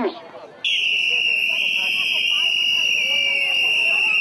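A loud, steady high-pitched tone starts abruptly about half a second in and holds without a break, with faint voices underneath.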